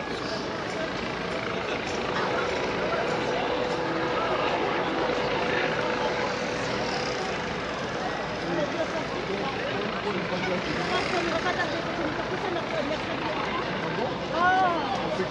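Busy outdoor street ambience: a steady mechanical drone with distant voices of people around. A faint steady hum comes in about two seconds in and fades out a few seconds later.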